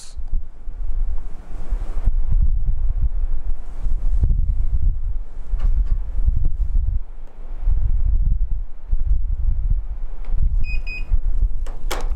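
Low, gusty rumble of air buffeting a clip-on lapel microphone, swelling and fading every second or two. One short, high electronic beep near the end.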